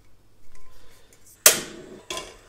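A frying pan set down on the stove with a single sharp metallic clank about one and a half seconds in, ringing briefly.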